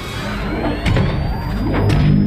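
Sound effects of robotic armour suits powering up: a rising whine with sharp mechanical clanks about a second in and near the end, over a low rumble and music.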